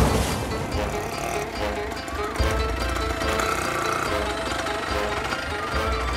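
Film background music with held notes, over an uneven low rumble.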